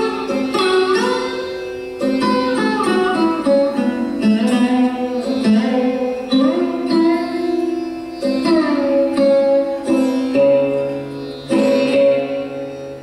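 Sarod played solo: a run of plucked notes with sliding pitch bends, each stroke left ringing. The tabla is silent.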